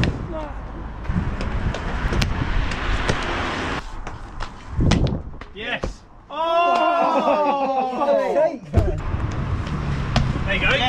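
Parkour landings on brick walls: a thud about five seconds in and another near nine seconds, over steady street noise. Between them a person gives a long, wavering vocal cry.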